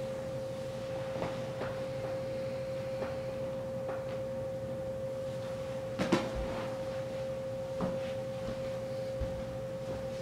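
A steady humming tone of unchanging pitch runs throughout. A few soft knocks and rustles of someone getting up off a leather couch and moving toward the camera sit beneath it, the loudest about six seconds in.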